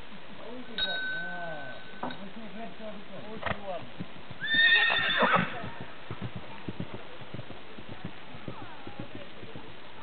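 A horse whinnying loudly for about a second around the middle, then soft, irregular hoofbeats on grass. A steady high tone sounds for just over a second shortly after the start.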